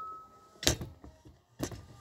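Two short sharp knocks of a camera and its stand being handled and moved, about a second apart. A faint ringing tone dies away at the start.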